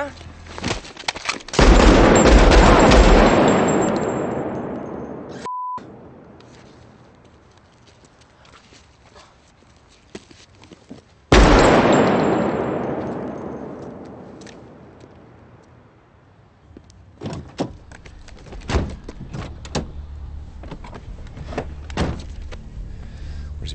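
Pistol shots: a quick burst about a second and a half in, and another shot about ten seconds later. Each has a long echoing tail that dies away over several seconds. A brief high steady tone comes between them, and small clicks and knocks follow near the end.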